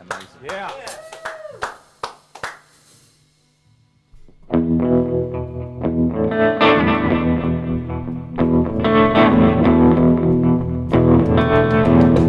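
A rock band kicks into a song about four and a half seconds in: distorted electric guitar, bass guitar and drum kit playing together. Before it starts there are scattered clicks and a few short gliding tones, then a moment of near quiet.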